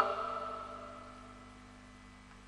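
The last sustained note of a male Quran recitation fading away about a second in, leaving a steady low hum from the old broadcast recording.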